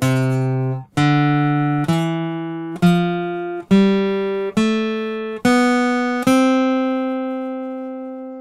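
Acoustic guitar playing the C major scale upward in single notes, eight notes at about one a second from C up to the C an octave higher, the last C left ringing.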